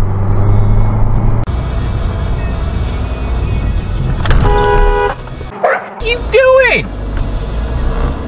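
A car horn sounds once for just under a second, about four seconds in, as a warning to a cyclist pulling out. It is followed by a driver's shouted exclamation over car cabin and road noise.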